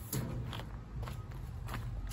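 A few irregular footsteps crunching on dry leaves and gravel, with low handling rumble from a hand-held phone.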